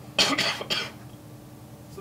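A person coughing: two quick coughs run together in the first second.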